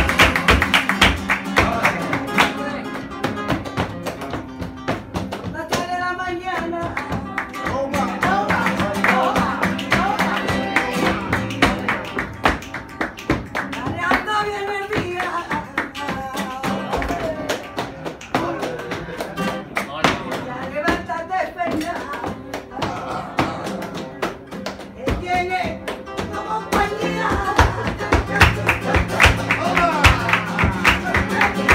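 Live flamenco: a Spanish guitar strummed and picked, driven by a steady rhythm of hand-clapping (palmas) from the troupe. A voice sings in short passages every few seconds.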